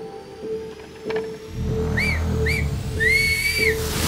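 A match whistle signalling the start of a fishing match, after a ten-second countdown: two short blasts half a second apart, then one longer blast of under a second, over background music.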